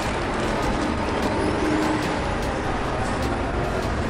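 Steady city street traffic noise from passing vehicles, with a faint high whine rising about a second and a half in.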